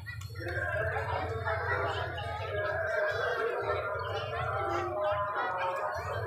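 Several voices sounding at once, with a low steady hum underneath.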